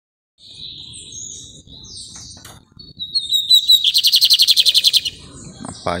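Male lined seedeater (bigodinho) singing: a few soft high notes, then about three seconds in a loud, fast, metallic run of rapidly repeated notes lasting about two seconds.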